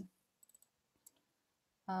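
A few faint clicks from operating the computer: a quick cluster of three or four about half a second in, then a single one about a second in, with near silence around them.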